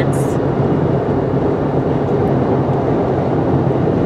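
Steady road and engine noise inside a moving car's cabin, a constant low rumble with a faint hum beneath it.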